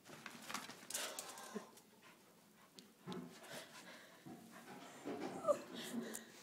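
A dog making sounds in three short noisy bouts, the last ending in a brief higher-pitched sound about five and a half seconds in.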